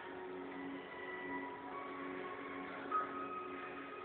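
Slow background music with long held notes, the higher ones moving to a new pitch every second or so, heard through a television's speaker.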